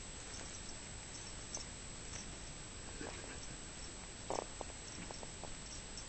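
A cat grooming herself: a few soft, short licking clicks of her tongue on her fur, the loudest a brief one a little after four seconds in, over a steady faint hiss.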